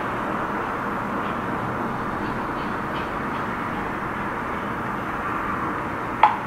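Steady, even background noise (room hum and hiss) with a few faint ticks in the middle, consistent with taps on a phone screen.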